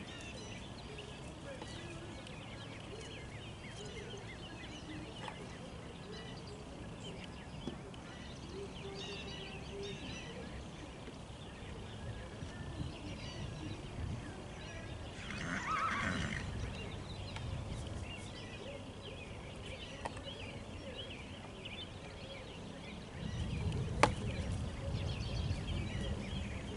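A horse whinnies once, about two-thirds of the way through, over faint bird chirps. Near the end there is a louder low rumble with one sharp knock.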